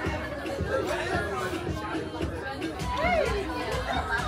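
People chatting at a table, voices overlapping, with music underneath.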